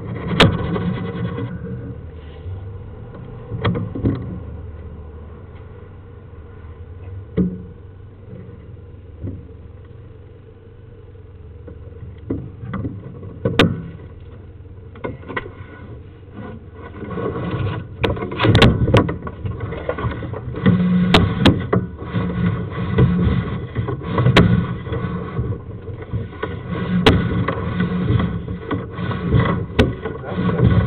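Scraping, rubbing and sharp knocks as a sewer inspection camera's push cable is fed down a sewer lateral. The sounds come irregularly, quieter through the middle and busier and louder in the second half as the camera is pushed further down the pipe.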